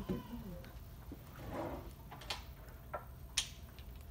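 Wooden Jenga blocks clicking a few times, single sharp clicks about two seconds in and again near the end, over quiet room tone.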